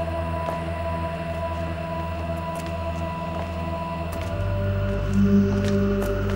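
Eerie background music: a sustained synthesizer drone of held notes that moves to a new, lower chord about four seconds in.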